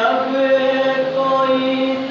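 A man's voice chanting an Urdu noha, a Shia mourning elegy, holding one long, steady note.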